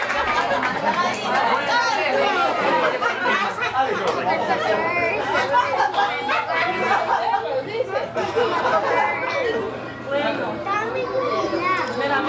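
Many guests chattering at once in a large dining room, overlapping voices with no single speaker standing out.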